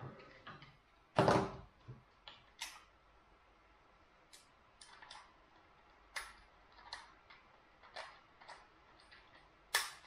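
Handheld camcorder being handled as something is pushed into it: a louder knock about a second in, then scattered light plastic clicks and taps from its catches and buttons, with a sharp click near the end.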